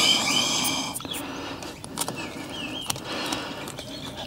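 Air hissing out of a 4WD tyre's open valve stem through a manual ARB tyre deflator, strongest for about the first second and then weaker and steady. A bird calls with short warbling whistles in the background.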